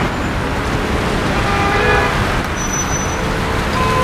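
Dense road traffic on a wet street: a steady rumble of engines and tyre noise. A car horn sounds briefly about a second and a half in, and another steady horn tone begins near the end.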